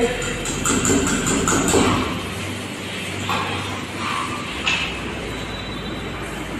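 Utensil scraping and knocking against a stainless steel mixing bowl of chocolate batter: a run of scraping strokes in the first two seconds, then a few single scrapes.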